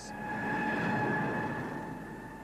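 A vehicle passing with a steady whine, swelling to its loudest about a second in and then fading away.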